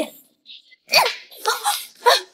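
A woman's short, sharp wordless cries: three brief bursts, the first about a second in, falling in pitch.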